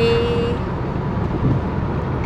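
Steady road noise of a moving car, heard from inside the cabin.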